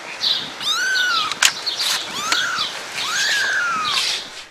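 Three-week-old kitten mewing, three thin high cries that each rise and fall in pitch, with a sharp click about one and a half seconds in.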